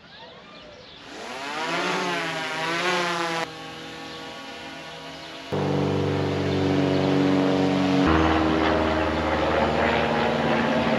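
DJI Mavic 3 Classic quadcopter's propellers spinning up for a hand launch: a whine that wavers in pitch for a couple of seconds, then a steady hum as the drone flies, its tone and loudness changing abruptly a few times.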